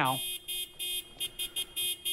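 A car horn tooted in a run of short, quick honks, about three a second, the impatient honking of someone waiting in the car to leave.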